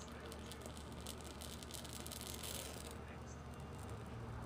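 Dry bay (laurel) leaves crackling as they burn: a quick run of small sharp crackles that thins out near the end.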